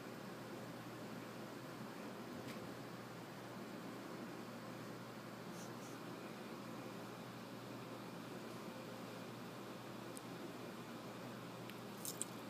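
Faint steady hiss of room tone, with a few soft scattered ticks and rustles.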